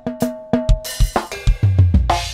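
Instrumental song intro: chords on a Korg Pa600 arranger keyboard over a drum kit beat of about four strikes a second. A cymbal wash comes in about a second in, and a deep bass note joins near the end.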